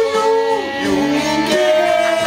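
A man singing with guitar accompaniment: a long held note, then lower notes, then another held note starting about one and a half seconds in.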